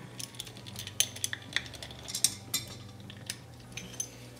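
Irregular metal clinks and plastic clicks from pliers and a socket working on a quick-connect fitting in a plastic bottle lid, as the fitting is tightened so it will not draw air into the dosing line. A steady low hum runs underneath.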